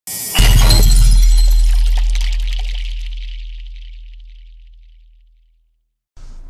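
Produced intro sound effect: a sudden deep boom with a bright, glassy shattering shimmer about half a second in, the rumble fading slowly away over about five seconds.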